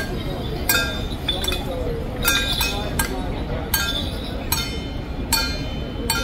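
Small metal percussion struck over and over with a bright, ringing clink, about two to three strikes a second but uneven, keeping the beat for a Ba Jia Jiang troupe's ritual steps. Voices sound over it early on.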